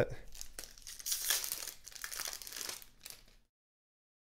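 Foil trading-card pack wrapper crinkling and tearing as a pack is opened by hand. It is loudest about a second in and stops abruptly about three and a half seconds in.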